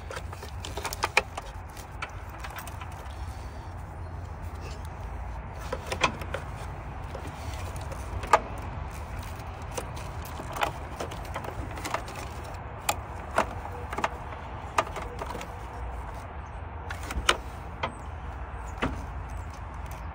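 Scattered sharp metallic clicks and clinks of a wrench and metal parts being handled while wiring is connected in a car's engine bay, over a steady low rumble.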